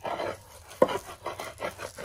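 A round grinding stone rubbed in strokes across a curved Namak-yar plate, crushing herbs and walnuts with a rasping sound, with one sharper knock a little before the one-second mark.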